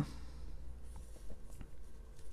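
Fingers rubbing and pressing a small sticker onto a white plastic LEGO slope piece: faint scratching with a few light ticks.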